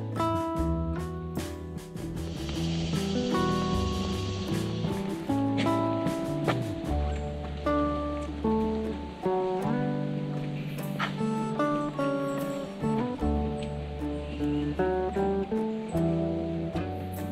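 Background instrumental music: a plucked guitar melody over sustained bass notes.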